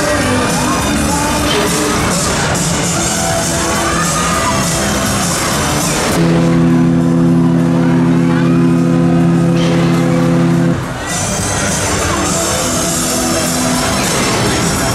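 Loud fairground ride music playing over the swinging Huss Frisbee, with shouts from the riders. About six seconds in, a loud steady low chord holds for roughly four and a half seconds, then cuts off.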